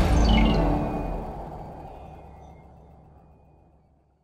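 Logo sting sound effect: a deep boom with a quick run of bright high tones stepping downward, then a long fade that dies away over about three and a half seconds.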